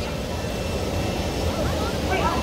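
A steady low rumbling noise, with faint voices coming in near the end.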